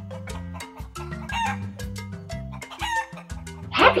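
Rooster giving two short calls about a second and a half apart, over marimba background music.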